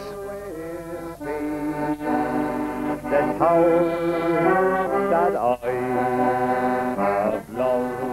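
Piano accordion playing a slow tune in long held chords that change every second or so, with a brief break a little past the middle.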